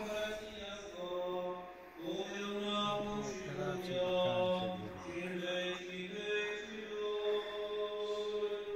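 Orthodox church chant: voices singing a slow melody of long held notes over a steady low note.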